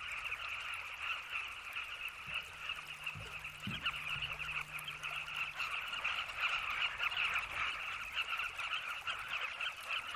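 Colony of carmine bee-eaters calling: a dense, steady chorus of many overlapping short calls.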